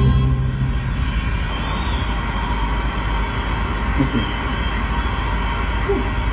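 A car driving along an open highway: steady tyre and engine noise. Background music cuts off about half a second in.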